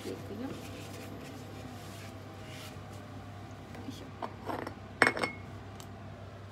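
Kitchen utensils and dishes being handled: soft rubbing and light clinks, then a sharp ringing clink about five seconds in, over a steady low hum.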